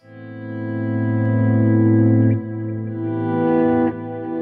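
Clean electric guitar chords played through a Mesa/Boogie Triaxis preamp and 2:90 power amp. A sustained chord fades in and rings, with a chord change a little past halfway and another near the end.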